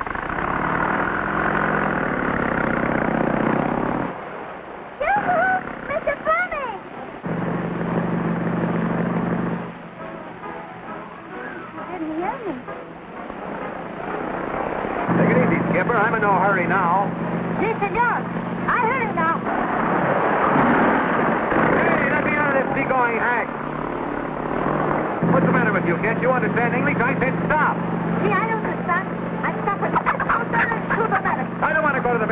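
Motorcycle-and-sidecar engine running steadily in several long stretches, under voices and wavering music on a thin, muffled early sound-film track.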